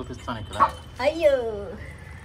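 A toddler's short wordless vocal sounds: a brief call near the start, then a longer call about a second in that falls in pitch.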